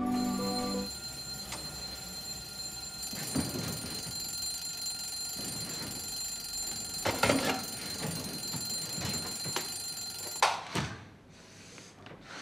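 Electronic alarm clock sounding a steady high-pitched alarm tone, with bedding rustling now and then. It cuts off with a knock about ten and a half seconds in.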